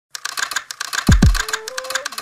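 A news channel's intro sting: a fast, even ticking at about five ticks a second, with two deep booms that fall in pitch about a second in and a thin tone stepping upward.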